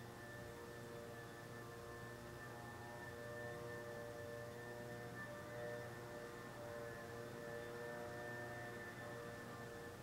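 Faint ambient drone of several sustained ringing tones that slowly swell and fade, over a low steady hum.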